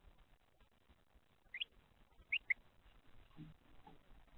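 Three short, high, rising bird chirps: one about a second and a half in, then two in quick succession about a second later. A soft low bump follows near the end.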